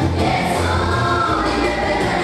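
A choir of voices singing a gospel song over musical backing with sustained bass notes.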